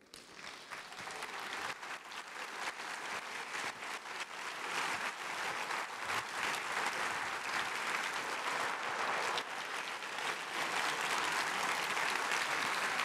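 Audience applauding in a theatre: a dense patter of many hands clapping that starts suddenly, builds over the first couple of seconds and then holds steady.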